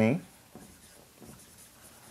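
Marker writing on a whiteboard: faint scratchy strokes as letters are written out.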